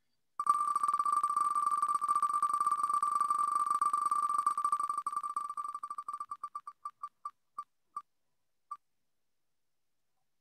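Wheel of Names spinning-wheel tick sound effect: very fast electronic ticks that run together into a steady tone, then slow into separate ticks further and further apart about six seconds in, the last one near the ninth second as the wheel comes to rest.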